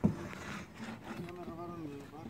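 A faint man's voice talking in the background, too quiet to make out the words.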